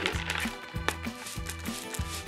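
Background music with a steady beat, over which a plastic trigger spray bottle squirts water mist in a few short hisses.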